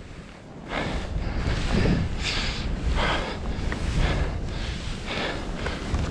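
Skis turning through deep powder snow, a run of soft swishes roughly one or two a second, over low wind rumble on the microphone.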